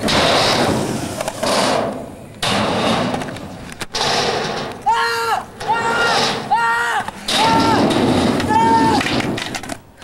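Skateboard wheels rolling on concrete with a coarse rushing noise. Midway through come five short, steady-pitched hoots about two-thirds of a second apart.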